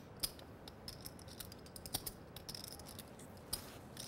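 Poker chips clicking faintly and irregularly as they are handled at the table.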